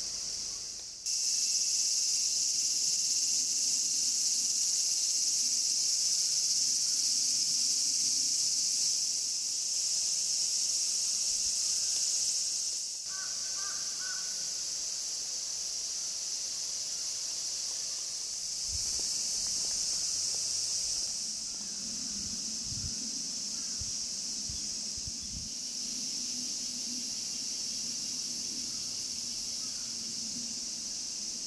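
Steady high-pitched drone of a summer cicada chorus, dipping briefly about a second in and again about 13 seconds in. A short chirp comes near the middle, and a few low thumps come later.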